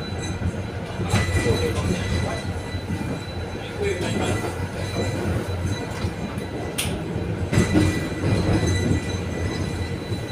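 Konstal 805Na tram running on its rails, heard from inside the passenger car: a steady low rumble of wheels and running gear that swells louder about a second in and again near eight seconds, with one sharp click about seven seconds in.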